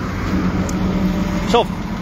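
A car passing on the street, its noise swelling and fading through the middle, over steady road traffic noise.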